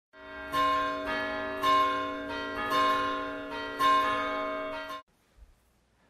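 Church bells ringing, a new strike about every half second over a sustained hum of overtones. The ringing cuts off abruptly about five seconds in.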